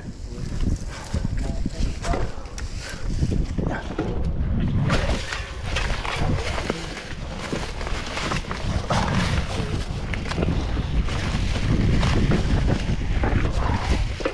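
Mountain bike ridden over a rocky trail: irregular knocks and clatter as the tyres drop over rock and crunch through dry leaves, with the bike rattling and a steady wind rumble on the microphone.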